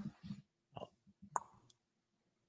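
Nearly quiet room tone with a couple of faint, short clicks a little under and a little over a second in.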